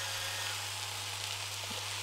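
Moringa leaves frying with a steady gentle sizzle in a nonstick pan, while a hand pepper mill grinds black peppercorns.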